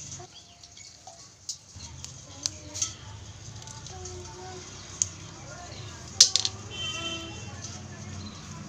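Sharp, separate clicks and snaps of a live freshwater crab's shell and legs being broken apart by hand, the loudest about six seconds in.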